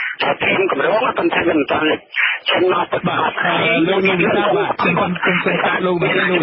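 Speech only: one voice talking on with hardly a pause, narrow and muffled in tone like a radio broadcast.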